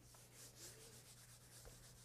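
Chalkboard eraser rubbing across a blackboard in a run of faint, repeated strokes.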